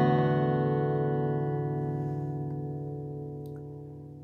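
Acoustic guitar's final strummed chord of the song ringing out and slowly dying away.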